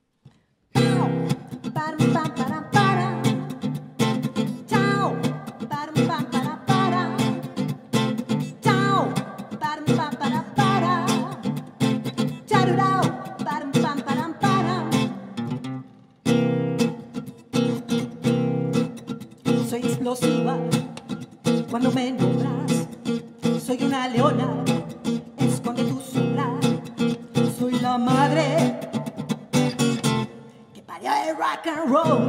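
Acoustic guitar strummed in a steady rock-and-roll rhythm, starting about a second in, with a brief break near the middle before it picks up again.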